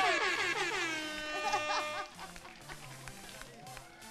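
Game-show horn sound effect signalling that the countdown has run out: one long tone that drops in pitch at first, then holds steady and fades away after about two seconds.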